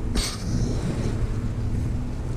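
Honey bees buzzing around an opened hive and the frame held up close, a steady hum, with a brief hiss soon after the start.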